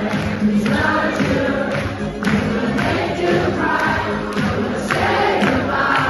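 Loud music with a steady beat of about two strokes a second, with a large crowd of voices singing and chanting along.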